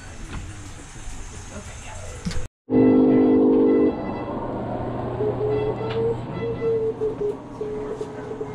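A loud horn-like tone of several pitches sounding together, about a second long, followed by a steady low hum with a higher tone that comes and goes.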